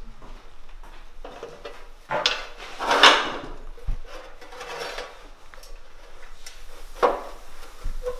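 A large tile being slid across and set down on a manual rail tile cutter. There is a loud scraping slide about two to three seconds in, a low knock just after it, and a sharp clack near the end.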